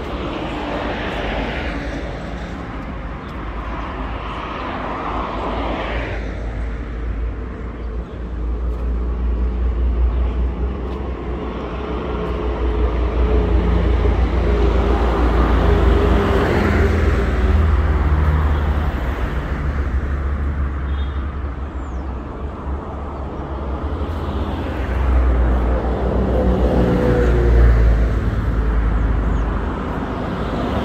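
Road traffic passing close by: car and minibus engines over a steady low rumble, swelling louder in the middle and again near the end as vehicles go past.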